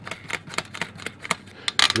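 Irregular run of light metallic clicks and ticks as the new metal furnace vent cap is handled and its collar worked by hand.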